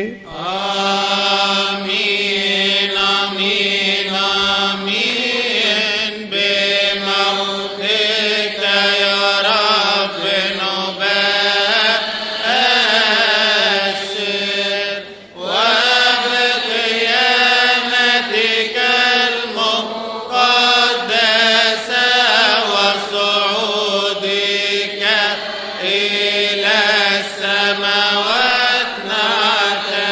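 Coptic liturgical chant: long, melismatic sung response with drawn-out wavering notes and a short breath break about halfway. It is the chanted response that follows the priest's words of institution in the Divine Liturgy.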